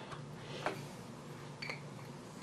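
Quiet room tone with two faint, brief clicks about a second apart.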